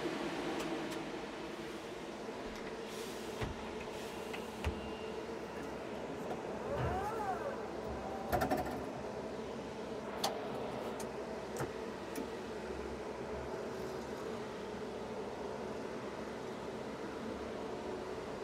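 Lithium-ion electric forklift running: a steady electric motor whine throughout, with a glide up and back down in pitch about seven seconds in as the motor speeds up and slows. Several sharp clicks and knocks come from the controls and chassis.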